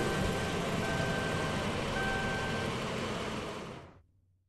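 City street traffic noise: vehicle engines rumbling under a steady roar, with a thin held tone sounding on and off, all fading out near the end.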